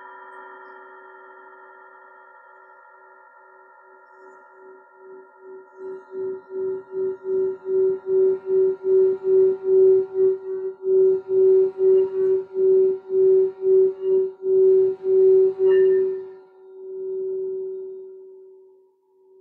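Hand-held singing bowl, first fading from an earlier strike, then rubbed around its rim with a mallet. Its single hum swells from faint to loud, pulsing about two to three times a second. Near the end there is a light click, and the hum rings on.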